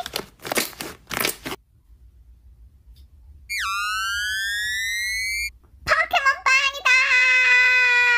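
Slime being squeezed and folded by hand, giving three loud crunching crackles in the first second and a half. A synthetic gliding-tone sound effect follows at about the middle: it drops sharply, then slowly rises for about two seconds. Near the end comes a drawn-out voiced sound.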